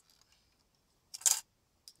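The tin battery cover of a Haji tinplate toy helicopter coming off: one short clatter just over a second in, then a faint click near the end.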